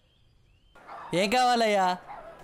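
A man's long drawn-out crying wail, starting a little past halfway through and lasting about a second, its pitch wavering and sinking slightly before it cuts off abruptly.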